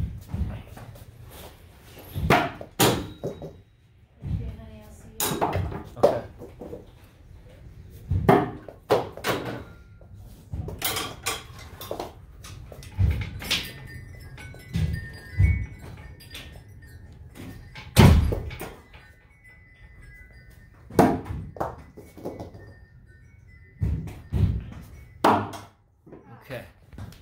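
Repeated sharp thuds of thrown knives striking a wooden target board and the wall around it, then dropping onto foam floor mats, at an irregular pace of one every one to three seconds.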